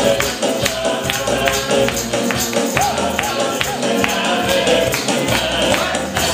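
Live gospel band playing: drum kit keeping a steady beat under keyboard and electric guitar, with a wavering voice-like melody in the middle.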